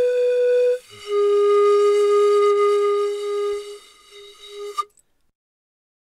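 Closing music: a flute-like wind instrument holding long notes, stepping down to a lower note about a second in and holding it for nearly four seconds before it stops.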